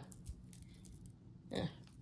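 Quiet room tone with a few faint clicks in the first half second, then a woman briefly says "yeah" near the end.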